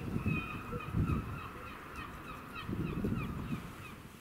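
Birds calling outdoors: a run of short, repeated honking calls, several a second, over a low rumble, fading out near the end.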